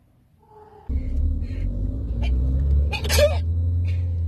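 Car engine and road rumble heard from inside the cabin, starting suddenly about a second in, with the engine note rising slowly as the car picks up speed. A brief voice sound about three seconds in.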